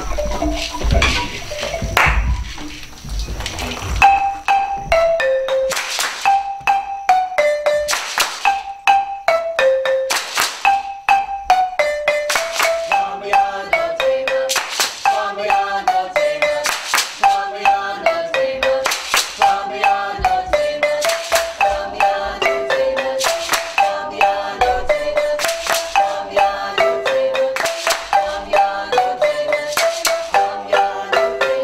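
Marimba ensemble starting a piece about four seconds in, after a few seconds of low rumbling noise. A repeating pattern of mid-range marimba notes is played with a shaker keeping time, and lower marimba parts join around twelve seconds in.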